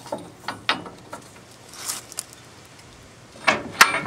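Scattered sharp metal clicks and clanks from the steel tow dolly's tray lock being set and rattled, with the loudest knocks close together near the end.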